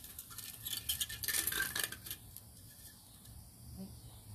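Pine cones being dropped and settled into the bottom of a clay flower pot as a drainage layer: a quick run of light clicks and rattles in the first two seconds, then quieter.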